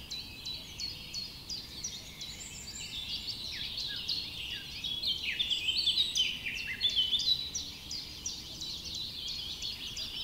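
Several small birds chirping together, a dense stream of short, high, mostly falling chirps. It is busiest and loudest a little past halfway.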